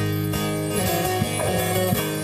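Bağlama (long-necked Turkish saz) playing an instrumental phrase of a Turkish folk song (türkü), its plucked notes over a steady low accompaniment.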